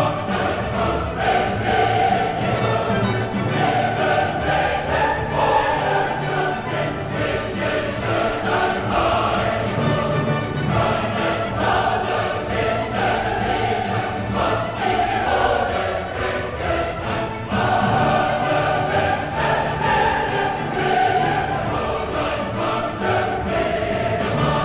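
Choral music: a choir singing sustained lines over orchestral accompaniment, continuous throughout.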